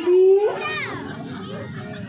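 A child calling out close by: one loud held note, then a falling call, with crowd chatter behind.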